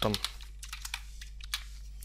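Typing on a computer keyboard: a quick run of key clicks, with a steady low electrical hum underneath.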